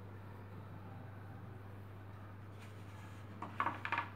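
Quiet room with a steady low hum, then a quick cluster of clicks and clatter about three and a half seconds in, from objects being handled.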